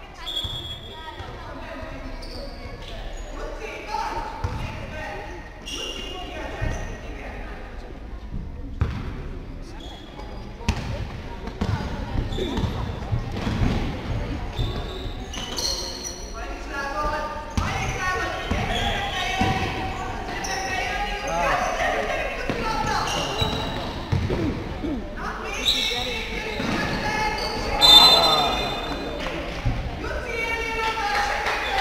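Basketball bouncing on a sports-hall floor during play, with players' and bench voices calling out and echoing in the large hall. A loud burst of sound comes near the end.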